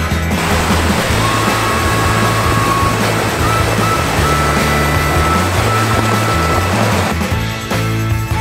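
Rushing, splashing water from a Jeep Wrangler's tyres ploughing through a shallow creek crossing, heard under background rock music; the water noise drops away about seven seconds in.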